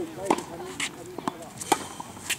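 Tennis balls struck by rackets and bouncing on a hard court during a baseline rally: a run of sharp pops about half a second apart. A voice is heard faintly near the start.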